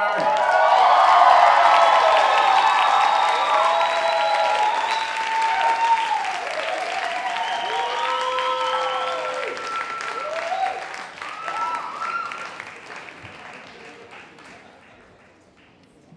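Audience applauding and cheering, with rising and falling whoops over the clapping; the applause dies away over the last few seconds.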